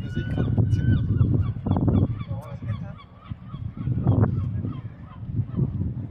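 Large bird calling, a quick series of loud honking cries in the first second and more cries around two and four seconds in, over a steady low rumble.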